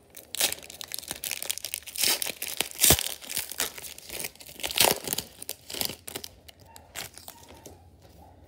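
Wrapper of an Upper Deck hockey card pack crinkling as it is torn open and the cards are pulled out: a run of sharp crackles, loudest about three seconds in and again near five, dying away after about six seconds.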